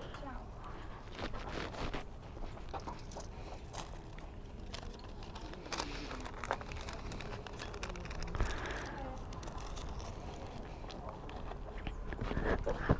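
Quiet outdoor background: a steady low rumble with scattered faint clicks and rustles of handling, and faint voices in the distance.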